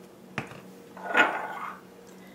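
A light click as a plastic seasoning shaker is set down on a granite countertop, followed about half a second later by a brief rustling clatter of small spice containers being handled.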